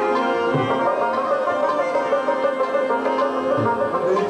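Pashto ghazal ensemble playing: rabab plucking the melody over held reed notes, with a few low tabla strokes.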